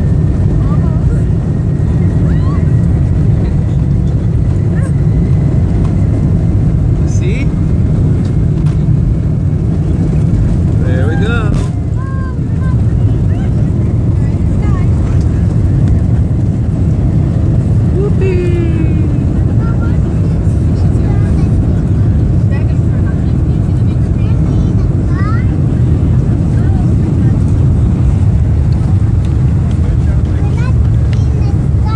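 Jet airliner's engines at takeoff power, heard from inside the passenger cabin as a loud, steady, deep noise, with a short dip in level about twelve seconds in.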